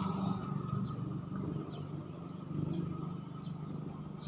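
Low, steady rumble of road traffic, swelling briefly near the start and again a little past halfway, with a few faint bird chirps.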